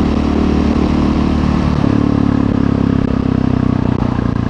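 Husqvarna 701 supermoto's single-cylinder engine running under way, recorded on the bike with wind noise. The engine note steps up to a higher pitch about two seconds in.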